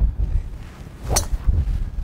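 A single sharp crack of a driver striking a golf ball off the tee, a little over a second in, over a low rumble of wind on the microphone.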